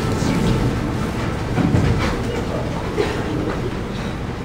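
Shuffling, rustling and irregular thumps of many people moving and sitting down on a wooden stage, in a break between songs with no music playing.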